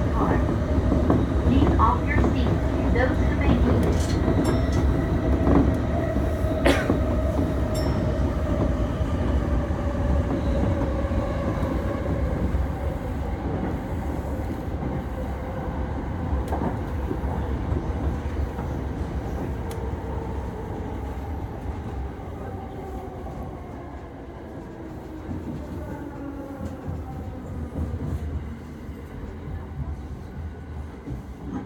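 Yamanote Line electric commuter train running on the rails, rumbling, with a few sharp clicks from the track. Its motor whine falls slowly and steadily in pitch and the running noise fades, as the train slows for the next station.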